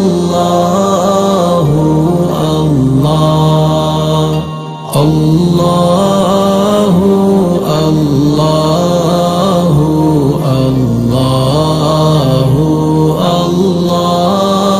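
Background Islamic chant (nasheed) in Arabic: one voice chanting in long, wavering melodic phrases, with a brief break about five seconds in.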